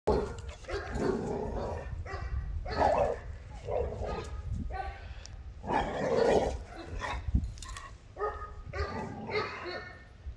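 American pit bull terrier puppy barking over and over in short bursts, about one a second, at a coyote it has spotted.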